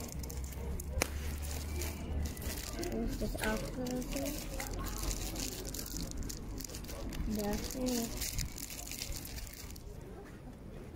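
Steady outdoor noise with rustling on the microphone and a single sharp click about a second in. Brief snatches of voices come around four seconds in and again near eight seconds.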